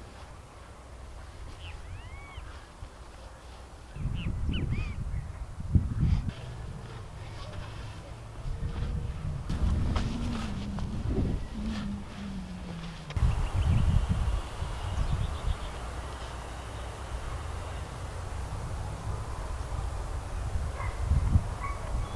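A garden rake dragged through loose soil in irregular scraping strokes as the beds are levelled. Birds call over it, with short arched calls about two seconds in and again around five seconds in.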